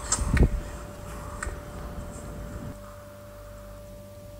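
Quiet room tone with a faint steady hum, opened by a brief low thump in the first half-second and broken by a few soft clicks; the low background noise drops away a little before three seconds in.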